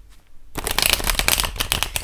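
A tarot deck being shuffled by hand: a rapid, dense run of card clicks starting about half a second in.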